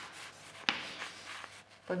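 Chalk writing on a blackboard: a sharp tap as the chalk meets the board about two-thirds of a second in, then a scratchy stroke lasting about a second.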